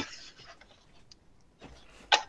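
A quiet pause in a voice call: faint room tone, with one small click about a second in.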